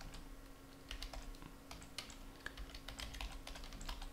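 Computer keyboard typing: a quick, irregular run of light key clicks, about a dozen keystrokes.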